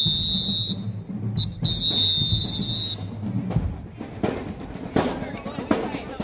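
Drum major's whistle blown in signal blasts: a long blast ending under a second in, a short chirp, then another long blast of well over a second. After that come scattered drum hits from the band's drumline.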